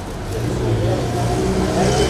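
A motor vehicle's engine running close by, a low steady rumble that builds up about half a second in, with faint voices in the background.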